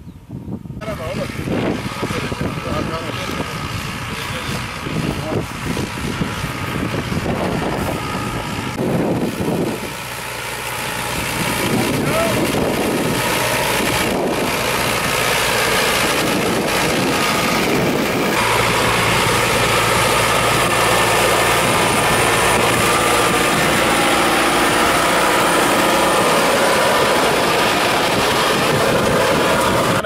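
Farm tractor's diesel engine running while it pulls a seed planter during sowing. The sound gets louder about ten seconds in and then stays steady.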